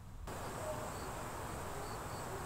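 Outdoor ambience that cuts in abruptly about a quarter second in. It is a steady, even hiss with a thin, constant high-pitched insect buzz and a few short, high chirps.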